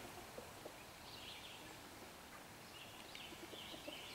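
Quiet outdoor ambience with a few faint, distant bird chirps, one about a second in and more after three seconds.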